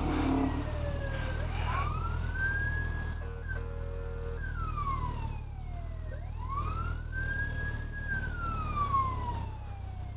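Emergency-vehicle siren in a slow wail, its pitch rising, holding and falling twice. Underneath, the low steady rumble of a 2009 Suzuki Hayabusa's inline-four engine at low speed.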